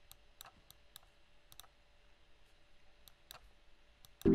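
Near silence with a handful of faint, separate clicks of a computer mouse.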